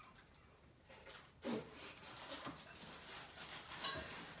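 Faint rustling and crinkling of gift wrapping being handled, with a short breathy laugh about a second and a half in and a sharper crinkle near the end.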